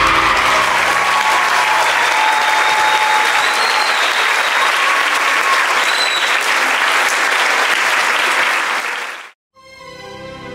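Large audience applauding, with a few cheers and whistles over the clapping. The applause cuts off suddenly near the end.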